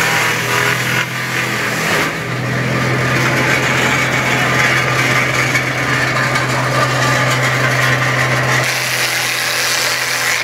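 Electric wood shredder running with a steady hum while pieces of wood are fed in and chewed up, a dense grinding and rattling over the hum. The noise dips briefly about a second and two seconds in.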